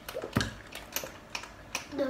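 Close-miked eating sounds: scattered sharp mouth clicks and smacks from chewing, with one heavier knock about half a second in as a large plastic soda bottle is set down on the table.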